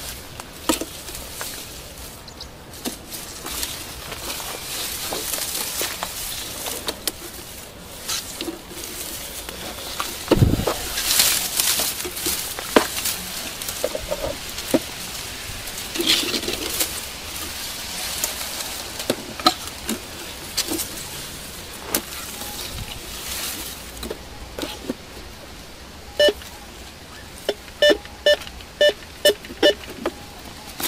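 Rustling and steps through tall grass and brush with a single low thump about ten seconds in. Near the end a metal detector starts sounding a run of short beeps, a couple a second, as its coil passes over a buried metal target.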